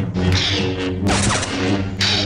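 Film-style lightsaber sound effects over background music: a steady electric hum broken by swings and clashes, the biggest about a second in.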